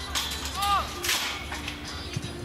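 Football match sounds on the pitch: players shouting, with one drawn-out call about half a second in, and a sharp smack of a kicked ball.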